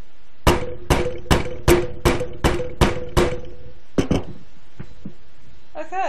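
Rubber mallet striking a soap stamp pressed onto a bar of soap on a timber board: eight steady blows about two and a half a second, then a pause and two quick taps together.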